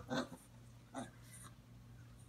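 Faint, brief sounds from five-week-old basset hound puppies, with a woman's soft "oh" about a second in.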